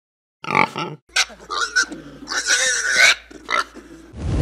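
Pig grunting and squealing: two short calls in the first second, then a run of grunts with a longer squeal about two to three seconds in.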